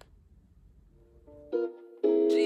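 Faint room tone, then about a second and a half in, background music starts with a plucked-string phrase on guitar or ukulele.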